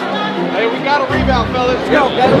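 Voices, with the steady bass of the background music cut out.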